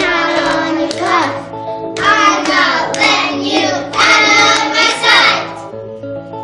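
Two young girls singing a short refrain together over a backing track. The singing stops about half a second before the end, leaving only the accompaniment.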